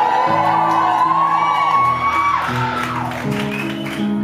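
Solo piano playing slow, sustained chords, with several audience members whooping and cheering over it; the cheering fades out about three seconds in, leaving the piano alone.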